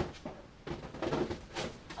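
Plastic bedpan being set down in a bedside cabinet drawer: paper towel rustling, with a light knock at the start and another sharp knock about a second and a half in.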